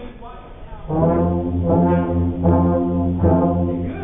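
A high school band's brass section playing a loud, low, sustained passage of a few held notes, starting about a second in and cutting off near the end.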